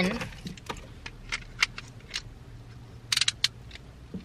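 Plastic clicks and taps from an Mpow phone car mount being handled as a phone is fitted into its holder, with a quick cluster of clicks about three seconds in.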